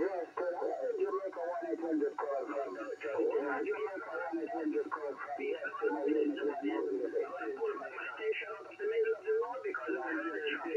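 A distant station's voice received in single sideband on a Xiegu G90 HF transceiver, heard through the radio's speaker as continuous talk that sounds thin and narrow, like a telephone.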